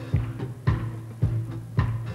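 Live blues band playing a steady groove: drum kit hits about twice a second over a held low bass note.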